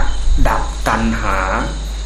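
An elderly monk speaking Thai in a Dhamma talk, pausing near the end, over a steady high insect chirring and a constant low hum.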